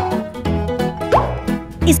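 Bouncy children's background music with a steady beat, and a short rising plop just over a second in.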